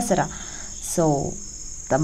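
A steady, shrill high-pitched whine runs unbroken, with a short spoken syllable about a second in.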